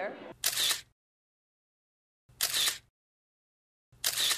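Camera shutter sound effect, a short burst of about half a second, heard three times: about half a second in, near two and a half seconds, and again at the very end, with dead silence between.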